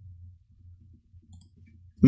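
Quiet room tone with a low steady hum, and one faint key click from a computer keyboard a little past halfway through.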